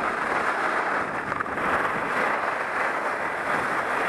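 Skis running over firm groomed corduroy snow, mixed with wind on the microphone: a steady noise with no distinct events.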